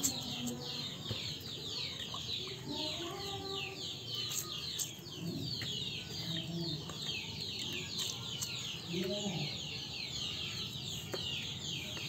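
Village chickens clucking in short low calls now and then, over constant high, quick chirping.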